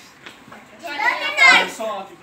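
Voices of a party crowd, quiet at first, then a loud, high-pitched shout from a child's voice about a second in.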